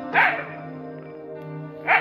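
A dog barks once, sharply, about a quarter second in, at a monitor lizard it has chased up a tree, with another short loud sound near the end. Background music with steady held notes plays underneath.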